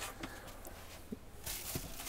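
A faint stream of pink RV antifreeze running from a bathroom faucet into the sink, with a few soft knocks.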